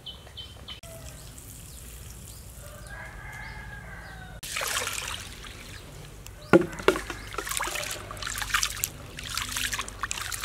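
A rooster crows once, about three seconds in. Then, from about four and a half seconds, hands swish and rub soaked sticky rice in a plastic basin of water, an uneven splashing and sloshing with a sharp splash at about six and a half seconds.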